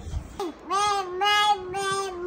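A baby's sung-out vowel, one long held 'aah' at a nearly even, fairly high pitch starting about half a second in, with a short rising squeak just before it.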